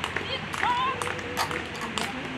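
Spectators clapping in a loose, uneven beat, with a short high-pitched call that wavers in pitch about half a second in.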